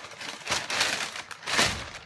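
Thin plastic shopping bag rustling and crinkling as hands rummage through it, in two bursts, the second shorter one near the end.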